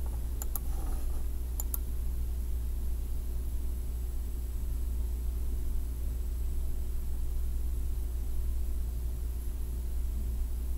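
Steady low electrical hum and hiss from the recording setup. About half a second in and again near two seconds, there are two pairs of faint computer-mouse clicks.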